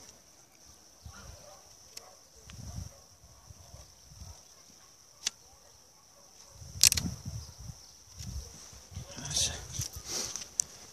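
Faint shaving and scraping of a pruning knife paring the saw cut on a young quince stem smooth, so the wound calluses and heals faster. There are a few light clicks, with a sharper knock about seven seconds in.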